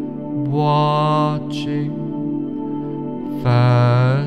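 Slow new-age meditation music: a sustained low drone with two long held notes swelling over it, one about half a second in and a louder one near the end.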